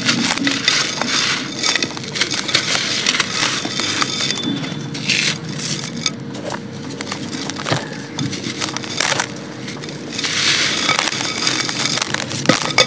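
Dry, grainy sand bars crumbled between the fingers: a steady gritty crunching with many small crackles as the sand pours into a clay pot. The crunching grows denser and louder near the end.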